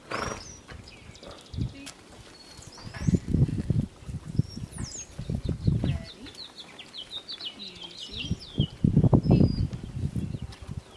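Small birds chirping repeatedly, with low, muffled rumbles at about three, five and a half, and nine seconds in.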